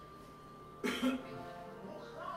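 Faint background music with steady tones, broken about a second in by a short man's cough.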